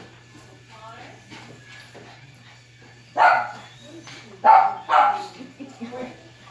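A small dog barking three times in the second half, the last two barks close together.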